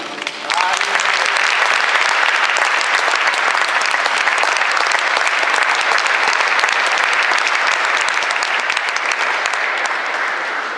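Audience applauding in a steady ovation, starting about half a second in, just as the wind orchestra's final chord dies away.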